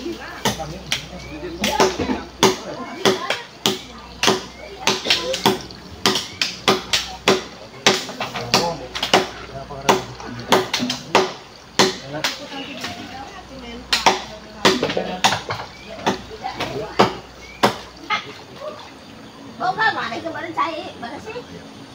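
Irregular hammer blows on wood, roughly two or three knocks a second, as a house's wooden roof frame of rafters and beams is being repaired.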